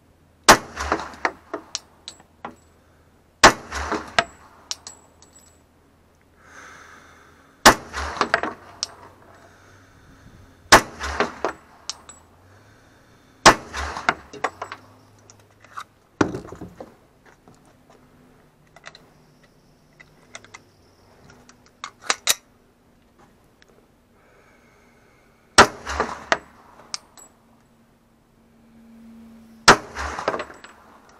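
.45 ACP Glock pistol fired with 230-grain full-metal-jacket rounds: about seven single shots a few seconds apart, each sharp crack trailing off in a short echo. A quieter stretch in the middle holds only a few lighter cracks and clicks.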